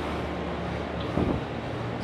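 Water running and churning through the plastic channels and lock gates of a water-play table, a steady wash of sound over a low steady hum. A brief low sound is heard about a second in.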